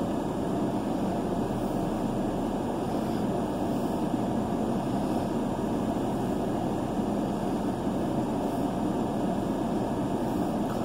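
Steady vehicle noise heard inside a car's cabin, an even noise with no changes.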